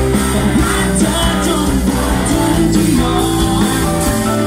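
Live amplified pop-rock band music with a male vocalist singing into a microphone, over a steady bass and drum beat with regular cymbal strokes.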